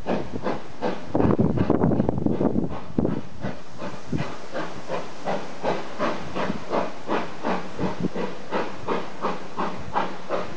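Steam locomotive hauling a train away, its exhaust chuffing. The beats are loud and crowded together for the first few seconds, then settle into an even chuff about two a second.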